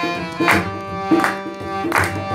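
Harmonium playing a held, reedy melody and chords, with a hand drum beating a steady rhythm underneath, a stroke about every two thirds of a second.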